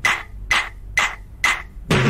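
Opening of a Telugu film song: a struck percussion instrument keeping an even beat, about two sharp strikes a second, each with a short ringing tone.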